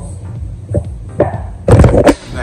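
Handling noise from a phone camera being grabbed: a couple of soft knocks, then loud rubbing and knocking of a hand on the phone and its microphone near the end.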